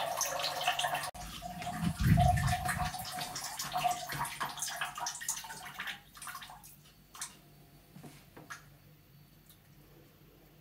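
A cat urinating into a toilet bowl: a steady trickle into the water that tapers off after about six seconds into a few last drips. A brief low rumble about two seconds in.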